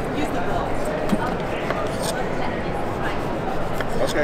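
Kitchen knife cutting a lemon on a wooden cutting board, with a few sharp clicks of the blade meeting the board, over constant crowd chatter.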